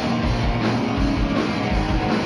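Live heavy metal band playing: electric guitars over a drum kit, with a steady kick-drum pulse.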